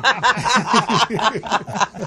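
People laughing at a wry joke, in quick, even ha-ha pulses.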